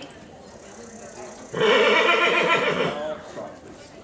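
A horse whinnying once, loudly, about a second and a half in, a call of about a second and a half with a trembling pitch.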